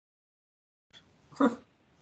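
A single short burst of breath or voice from a person, about one and a half seconds in, after a stretch of near silence where the call audio has cut out.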